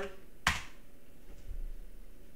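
A single sharp computer keyboard keystroke about half a second in: the Enter key submitting a typed login password.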